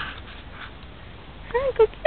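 Boxer dog giving two short, high-pitched yips near the end.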